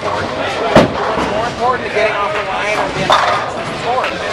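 Bowling alley chatter, with a sharp knock less than a second in as the bowling ball is released onto the lane, and a smaller knock about three seconds in.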